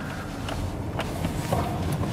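Tyre and road noise heard inside the cabin of an XPeng P7 battery-electric car rounding a slalom, a steady hiss with no engine note and a couple of faint ticks.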